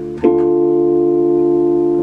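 Yamaha Motif XF6 keyboard playing a D minor chord, struck about a quarter of a second in and held at an even level without fading.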